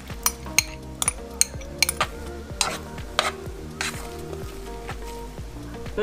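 A metal spoon stirring mashed potatoes in a bowl, clinking and scraping against the bowl's side in irregular sharp clicks.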